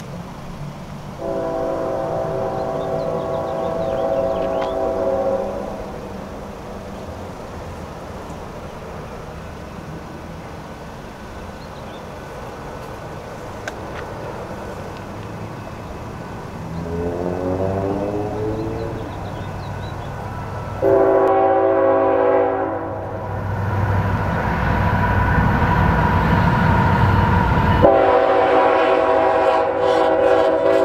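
Norfolk Southern diesel freight locomotive approaching and sounding its horn, several notes at once, in the long, long, short, long grade-crossing pattern; the second blast bends up in pitch. Under the horn, the rumble of the locomotive's engine grows louder through the second half.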